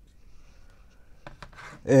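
Hands handling a car body control module's circuit board: faint rubbing with a few light clicks about a second and a quarter in.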